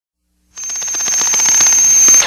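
Intro sound effect under the opening title: a fast, even rattling roll with a high held ringing tone. It starts suddenly about half a second in and swells in loudness, leading into guitar music.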